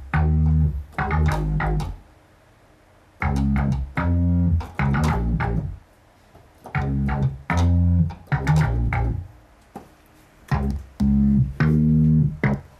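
Korg MS-20 analogue synthesizer playing a short riff of low bass notes, repeated four times with pauses of about a second between.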